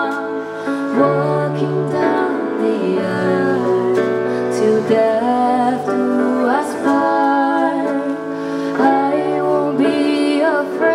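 A woman singing a love song live into a hand-held microphone, with instrumental band accompaniment and a bass line moving under the voice.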